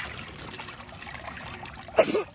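Water pouring and trickling, a steady soft rush.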